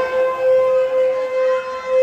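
Music: a single wind-instrument note held steady and loud without a break.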